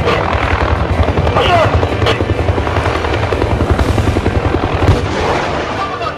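AH-1S Cobra attack helicopter flying low, its two-bladed main rotor beating in a rapid steady pulse. The beat fades about five seconds in, just after a single sharp bang.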